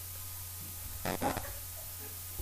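Four-cylinder engine of a Mazda Miata running, heard from inside the cabin as a steady low drone. About a second in, a short louder pitched sound rises over it.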